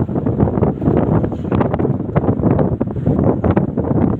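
Wind buffeting the microphone through an open window of a moving vehicle, over the vehicle's running noise: a loud, uneven rumble.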